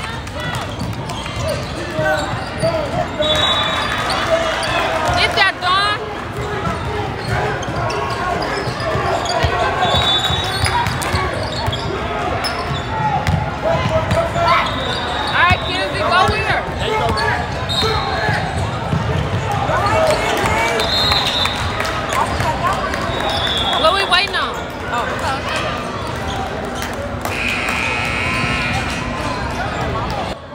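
Basketball game on a hardwood gym court: the ball dribbling and bouncing, with short high sneaker squeaks now and then over the steady chatter and shouts of players and spectators.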